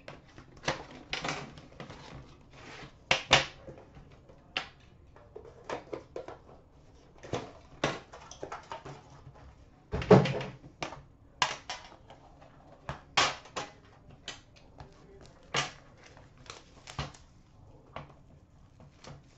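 A sealed trading-card box being unwrapped and opened by hand: plastic shrink wrap crinkling and tearing, cardboard sliding, and a metal card tin handled and opened, as scattered rustles and clicks. The loudest is a knock with a low thud about ten seconds in.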